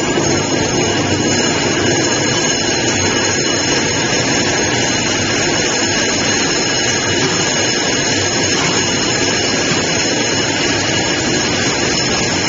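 Wire mesh belt shot blasting machine running: a loud, steady mechanical din from its blast wheels and motors, with several steady high-pitched tones over it, as metal parts are carried through on the belt.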